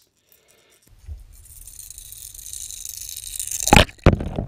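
Water rushing past an underwater camera as a squarebill crankbait is retrieved through the water. The hiss builds steadily over a low rumble and ends in a loud knock.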